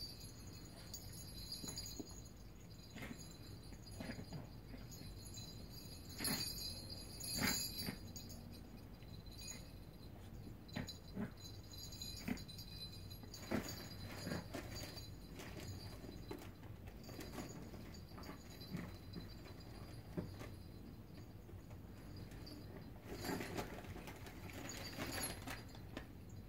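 A poodle nosing and pushing a clam-shell treat toy across carpet, with the toys and treats inside it: faint, scattered light knocks and jingly rattles, in louder clusters about six seconds in, around thirteen seconds, and near the end.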